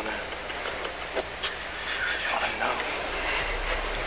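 Road noise heard from inside a moving car: a steady hiss and rumble, with a few faint clicks and brief snatches of voice.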